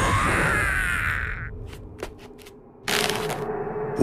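Anime fight sound effects: a loud rushing whoosh that fades out over the first second and a half, a few sharp clicks in a near-quiet gap, then a steady rumble with a low hum that comes in about three seconds in.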